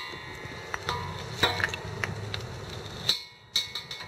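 A few light metallic clinks, some with a short ring, from a steel wrench knocking against the brass fittings of a propane bottle valve as a pigtail hose is unscrewed.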